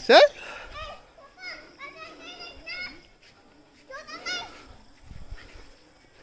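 Faint, high-pitched children's voices and calls in the background, short and intermittent, with quiet gaps between them.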